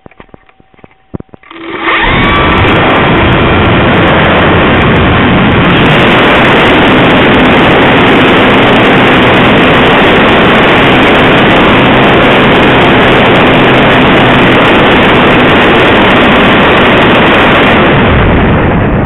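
Model aircraft's motor and propeller, heard from a camera on board, spinning up about a second and a half in and then running steadily at full power, loud enough to overload the recording.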